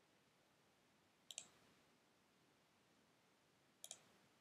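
Computer mouse button clicked twice, about two and a half seconds apart, each click a quick pair of snaps, over near silence.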